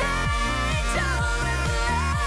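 Live electronic pop song: a woman's lead vocal holding a long sung line over a band with a steady kick drum beat and keyboards.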